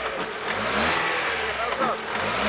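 Lada XRAY's engine revving under load as the car tries to drive out of a muddy rut, with a steady noise of the engine and tyres working in the mud.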